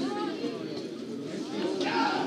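Raised human voices calling out, at the start and again near the end, over low background chatter.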